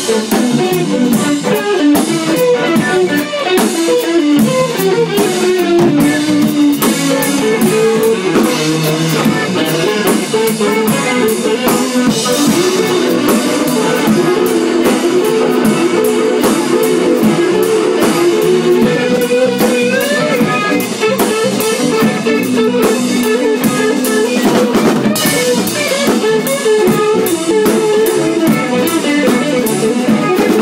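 Live rock jam: electric guitars and a drum kit playing together, loud and continuous, with cymbals and drum hits throughout.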